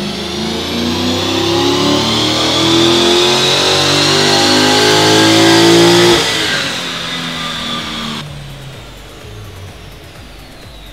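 An HSV E2 GTS's 6.2-litre LS3 V8, breathing through a full titanium exhaust with stainless steel headers, making a wide-open-throttle pull on a chassis dyno, its pitch rising steadily for about six seconds. It then comes off the throttle suddenly, and the note falls away as the rollers slow down.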